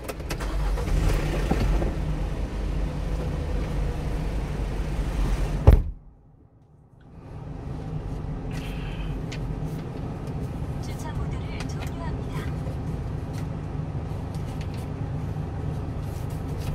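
A steady low vehicle rumble, broken about six seconds in by a sharp knock that cuts it off. After a second of near quiet, a steady hum comes back.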